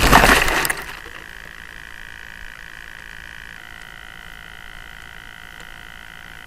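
Onboard-camera audio of an RC glider crashing into tall grass: the rushing, crackling noise of the impact dies away within the first second. Then a faint steady high whine of several tones holds, shifting slightly a little past halfway.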